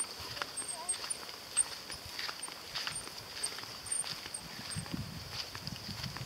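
A steady high-pitched drone throughout, with scattered short high chirps and faint, irregular footsteps on grass.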